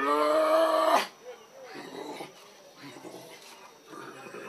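A loud, drawn-out cry about a second long that cuts off abruptly, followed by faint murmuring voices.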